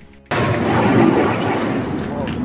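A blast from a strike: a sudden loud boom about a third of a second in, running on as a dense, sustained rumbling roar.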